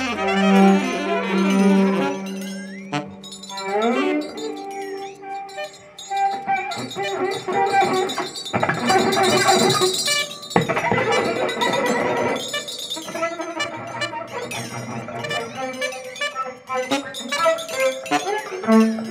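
Free-improvised ensemble music with cello and electric upright bass among other instruments. A held low note opens it, then pitches slide about three to four seconds in, and the playing thickens into a dense, busy passage in the middle.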